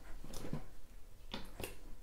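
A few short, scattered clicks and rustles of handling: gloved hands working cotton swabs and remover over a wallet's lining.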